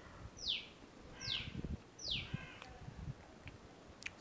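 A bird calling: three short notes, each falling steeply in pitch, about a second apart.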